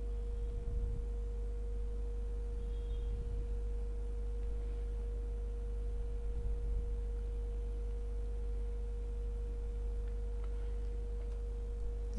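Steady electrical hum from the recording setup: one constant mid-pitched tone over a low hum, with a few faint low bumps.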